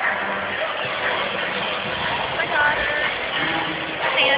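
Arena crowd chatter: many voices blending into a steady hubbub, with a few nearby voices briefly standing out.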